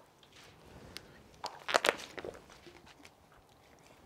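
Short burst of crinkling and crackling from a plastic water bottle being handled, loudest about two seconds in, with a few faint clicks around it.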